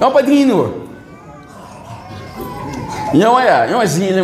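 A man preaching into a microphone in a drawn-out, sing-song voice, his pitch sweeping up and down, with a quieter pause in the middle.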